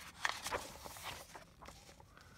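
Pages of a hardback book being turned: a few short papery swishes and rustles in the first second, fainter handling of the paper afterwards.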